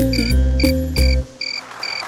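Stage music with a cricket-chirp sound effect, short high chirps about three a second. About a second and a half in, the music's bass and melody drop out, leaving the chirps alone.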